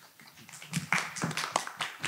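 A run of sharp, irregular taps or claps, starting about half a second in, like a few people clapping briefly or a microphone being handled.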